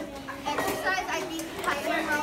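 Several middle-school children talking at once in a classroom: overlapping, indistinct chatter with no single voice standing out.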